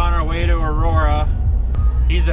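Steady low drone of a vehicle's engine and tyres heard inside the cab while driving, with a man's voice over it for the first second or so.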